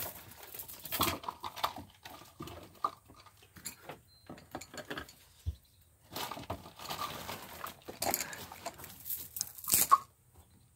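Rummaging under a desk: irregular rustling, scraping and light knocks of things being moved and handled.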